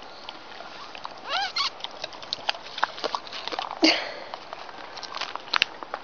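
Alaskan Malamute giving a short whine that bends up and down in pitch about a second and a half in, among scattered light clicks and taps. A louder, breathy noise comes just before four seconds.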